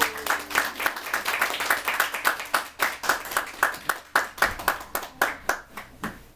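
A small audience applauding by hand, the clapping thinning to scattered claps and fading out near the end.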